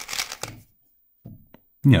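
Plastic 3x3 speed cube being turned quickly by hand, a fast run of layer turns clicking and clacking that stops about half a second in.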